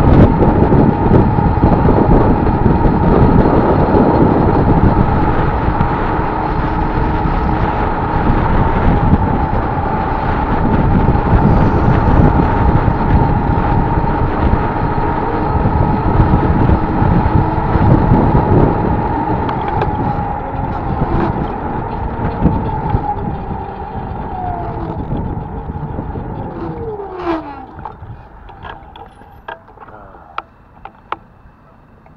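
Wind rushing over the microphone with a motorcycle engine running at road speed and a steady whine. Over the last few seconds the sound dies away and the engine note falls as the bike slows down.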